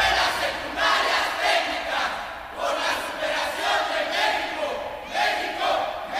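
A crowd of many voices together, rising and falling in loudness, with no instruments. The band music breaks off right at the start.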